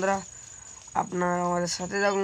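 A steady, high-pitched trill from a cricket-like insect in the grass, running throughout. Over it, a person's voice in short, level-pitched phrases, with a brief click about a second in.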